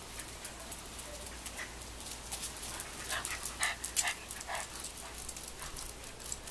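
Dogs yipping while playing: a quick run of short, high yips about halfway through.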